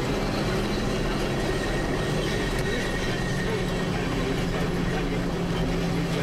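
Steady engine and road noise heard from inside a slowly moving vehicle, with a constant low hum under it.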